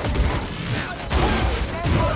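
Action-film fight sound mix: heavy hits and crashes layered over music, with a voice in among them. The strongest hits come a little after a second in and again near the end.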